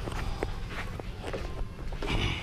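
Footsteps going down wooden stairs: a run of uneven knocks, a step about every half second.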